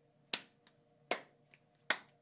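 Two people slapping palms together in a handshake routine: three sharp slaps about three-quarters of a second apart, with fainter claps between them.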